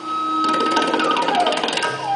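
Live Indian classical music: a bamboo flute holds a high note, then slides down near the middle, over a fast run of tabla strokes.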